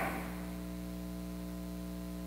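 Steady electrical mains hum with a stack of buzzy overtones. The echo of the last spoken words fades out at the start.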